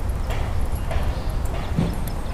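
Footsteps on pavement, about two a second, over a steady low rumble.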